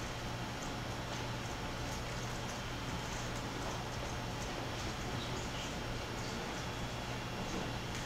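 Room tone in a lecture space: a steady low hum under an even hiss, with a few faint soft ticks.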